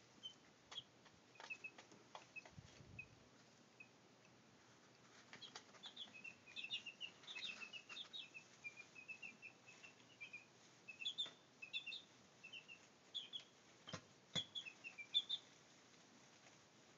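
Week-old Brahma chicks peeping: short high chirps, scattered at first and coming thick and fast from about five seconds in, with a few sharp clicks among them.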